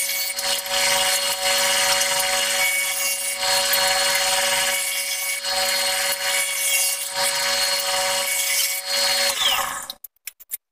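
Table saw running steadily, its blade ripping thin hardwood strips for inlay: a steady motor hum under the noise of the cut.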